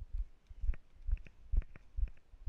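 Walking footsteps on a paved path, heard as dull low thuds about twice a second, with light clicks in between.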